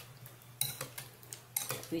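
Metal spoon clinking a few times against a ceramic bowl while stirring cut dragon fruit, short sharp clinks spaced irregularly.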